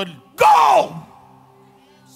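A man's voice: one loud, drawn-out shouted syllable that falls in pitch, about half a second long, then a pause over faint steady tones.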